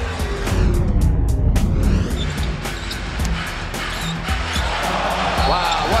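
Background music with a steady beat and heavy bass; about a second in, a filter sweep falls and rises back.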